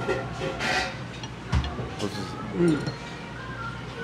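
A few light clinks and a scrape of a serving spoon against a ceramic dish as food is served out.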